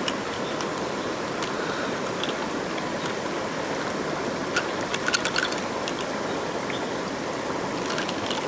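Steady rush of flowing river water, with a few faint, short clicks, most of them about five seconds in.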